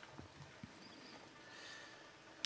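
Near silence: studio room tone with a few faint small clicks in the first second.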